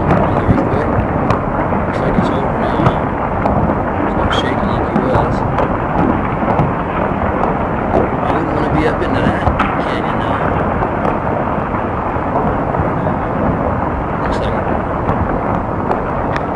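Earthquake-triggered landslide: rock and earth pouring down a hillside in a continuous deep rumble.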